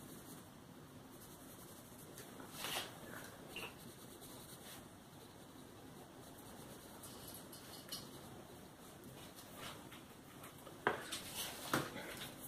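Faint scratching of a Neocolor II wax pastel crayon rubbed quickly over paper, in short uneven strokes. Near the end come two sharper knocks as the spiral-bound colouring book is handled and moved.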